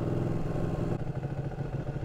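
Ducati 1299 Panigale's L-twin engine running under way, a steady low throb that drops a little in level about a second in.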